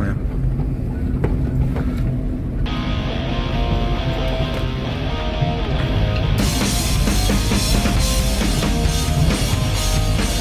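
Low rumble of car cabin and road noise, then rock-style background music with a drum kit fades in about three seconds in. It becomes fuller and brighter with cymbals and drums about six seconds in.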